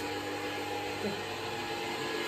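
Steady whirring hum of a small electric motor, even and unchanging, with a few faint steady tones in it.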